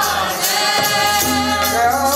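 Sikh kirtan: a man's voice singing a devotional hymn in long, gliding, held notes over steady percussion.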